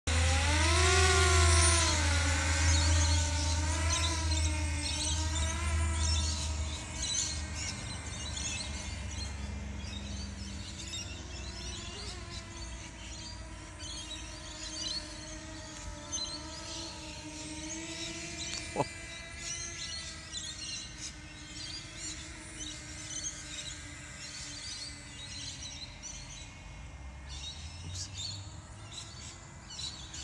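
Small FPV racing quadcopter (X210 frame) flying, its motors and propellers whining with a pitch that rises and falls as the throttle changes. It is loud at first and grows fainter as it flies farther off. Birds chirp in the background, and there is a single sharp click about two-thirds of the way through.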